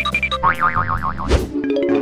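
Cartoon-style sound effects over children's background music: a warbling, wobbling tone, then about halfway through a long tone that slides steadily upward in pitch.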